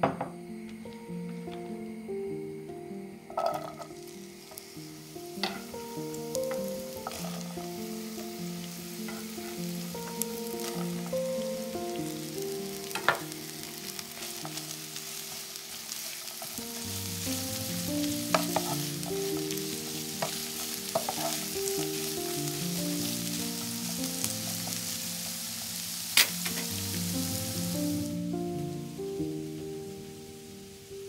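Sliced red onion and diced vegetables sizzling in olive oil in a nonstick frying pan as they are stirred with a wooden spatula, with a few sharp knocks of the spatula against the pan. The sizzle starts a few seconds in and cuts off abruptly near the end.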